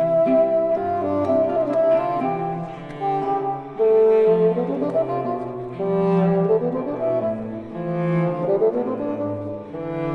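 Bassoon playing a moderato melody in C major over a cello bass line and guitar accompaniment, in a classical chamber piece for bassoon.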